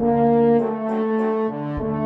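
Background brass music: held chords that change a couple of times.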